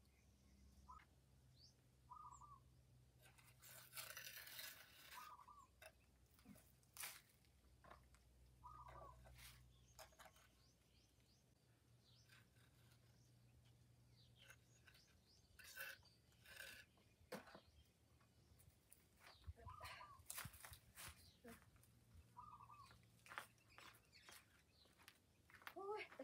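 Faint, scattered scrapes and knocks from hand work on a concrete block wall, with a longer scraping stretch a few seconds in. Short bird calls come now and then.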